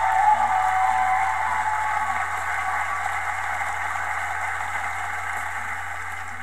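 Live studio audience cheering and shouting, loudest at the start and slowly dying down.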